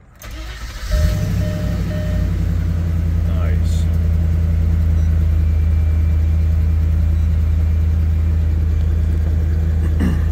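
Land Rover Discovery 2 V8 engine cranking for about a second, then catching and settling into a steady idle: it starts and runs on its newly replaced crankshaft position sensor.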